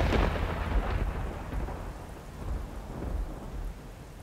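Thunder rumbling over steady rain, fading away slowly.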